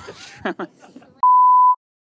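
A single electronic beep: one steady pure tone lasting about half a second, cutting in sharply about a second in over the tail of a man's laughter.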